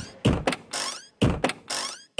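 About six short thudding percussion hits in an uneven, stop-start rhythm: the opening beats of a dance music track.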